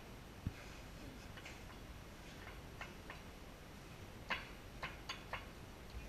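Bar tools and glassware clinking and tapping: a soft thump about half a second in, then a few short, sharp clinks, the loudest about four seconds in, with three quicker ones after it.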